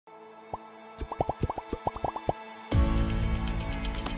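Logo sting: a quick run of about a dozen short, rising 'bloop' pops, then a loud sustained synth chord with deep bass that comes in about two-thirds of the way through and rings on.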